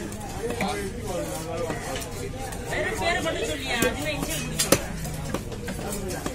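Background voices of a busy fish market, with a few sharp knocks and clinks, the loudest about three-quarters of the way through.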